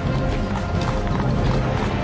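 Music with horses galloping over it, hoofbeats mixed into the soundtrack.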